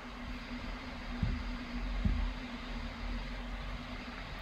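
Room tone: a steady low hum with a faint steady tone, and two soft low thumps, one a little over a second in and one about two seconds in.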